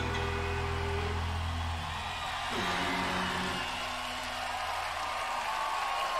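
A rock band's last sustained guitar and bass notes ringing out and dying away, one low note sliding down about halfway through, while crowd cheering and applause swell toward the end.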